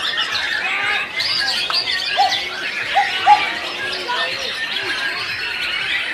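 White-rumped shama (murai batu) singing in its cage among many other songbirds singing at once, a dense, unbroken chorus of overlapping whistles and chirps with a few louder arched whistled notes.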